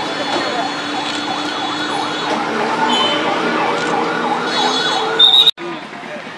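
Siren warbling up and down quickly and steadily, a couple of sweeps a second. Near the end there is a short, loud, shrill tone.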